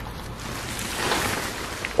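Black plastic tarp crinkling and rustling as it is pulled back by hand, a continuous rustle that swells about a second in.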